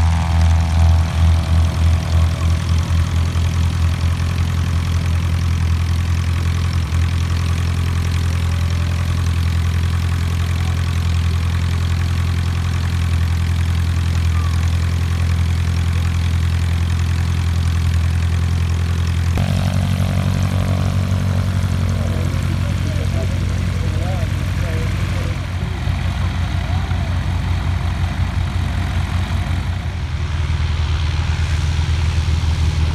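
Light-aircraft piston engines with propellers running: a steady low engine hum, pulsing in the first few seconds. About two-thirds of the way through it changes suddenly to a different engine note.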